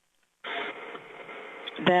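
Near silence, then about half a second in a steady hiss of telephone-line noise cuts in abruptly and eases off slightly, running until a voice resumes near the end.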